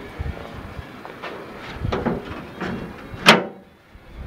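A few light knocks and rattles, then one loud metal clunk about three seconds in as the door of a 1961 Ford Ranchero is opened.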